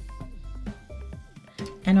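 Background music, with short held notes and a low pulsing bass under them.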